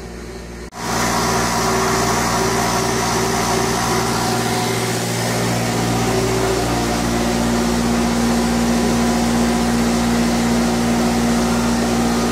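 Air compressor running steadily under load, a constant motor-and-pump drone that starts abruptly under a second in. It is the floor compressor keeping up with the air demand of a sandblaster while the second, vertical-tank compressor on the same air line has not yet kicked on.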